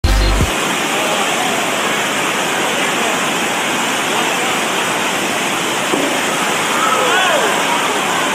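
Steady rush of water streaming over an indoor surf simulator's standing wave. Faint voices call out near the end.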